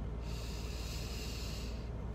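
A person's long breath, lasting about a second and a half, over a steady low hum in a car's cabin.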